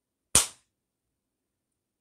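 A single sharp slap of a hand about a third of a second in, dying away quickly.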